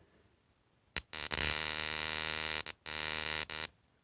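Battery-powered dual-output 12 kV gas hob igniter firing a rapid train of sparks with both channels switched on, heard as a loud crackling buzz. It also sparks where the control wires are held on by hand. It starts with a click about a second in, breaks off briefly near three seconds, and stops just before the end.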